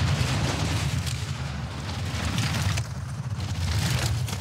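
Four-man bobsleigh running down an ice track at about 115–120 km/h: a steady, loud low rumble of the sled's runners on the ice, with a hiss above it.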